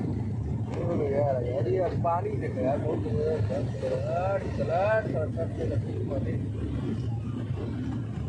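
Steady low drone of the turboprop engines heard inside the cabin of the Yeti Airlines ATR 72 in flight, with a passenger's voice talking over it for the first few seconds.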